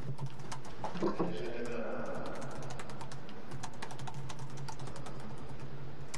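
A short laugh from a person on the microphone, followed by a stretch with a steady low hum and many small irregular clicks.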